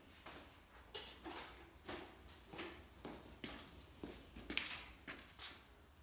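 Faint footsteps of a person walking across a concrete shop floor, a soft step roughly every three-quarters of a second.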